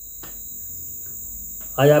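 A steady, high-pitched background hiss with no pulse or rhythm, and a faint click about a quarter second in. A man's voice comes in near the end.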